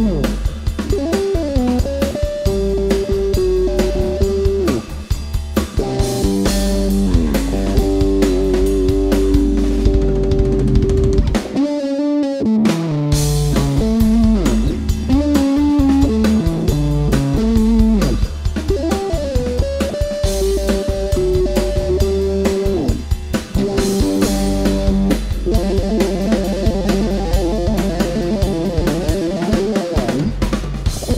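Electric bass guitar playing a fast, busy line over a drum kit, with a short break in the low end about twelve seconds in.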